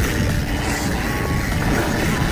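Mountain bike rolling fast down a dirt singletrack: steady rumble and rattle of tyres and frame over the trail, with wind rushing over the action camera's microphone.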